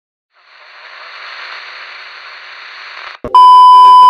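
A hiss of TV static fades in and holds for about three seconds, then cuts off with a click. A very loud, steady test-tone beep, the tone that goes with colour bars, follows near the end.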